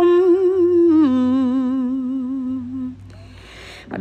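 Khmer smot chant, an unaccompanied solo voice in lullaby style, holding a long wavering note. About a second in it drops to a lower held note, which fades out near three seconds, followed by a short quieter breathy gap.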